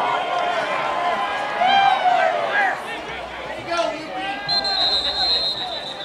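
Spectators and players shouting over each other during a lacrosse game, then a referee's whistle blown once in a long, steady blast about four and a half seconds in.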